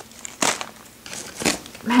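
Clear plastic clamshell packs of wax melts crinkling as they are handled, in two short rustles about half a second and a second and a half in.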